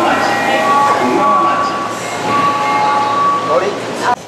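Subway platform din at a train standing with its doors open: voices and movement of passengers, with held electronic chime notes at a few different pitches, each lasting about a second.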